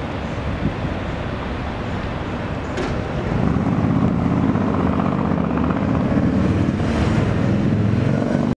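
City street traffic noise, a steady rumble of passing cars that grows louder about three seconds in and then holds.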